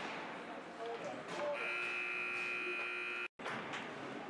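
Ice rink scoreboard buzzer sounding one steady, even tone for nearly two seconds, signalling the end of the period; it cuts off suddenly. Before it, general rink noise of skates and voices.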